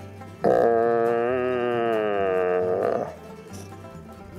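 Red stag roaring during the rut: one long, loud call of about two and a half seconds that starts suddenly about half a second in and sinks slightly in pitch, over background country music with banjo and guitar.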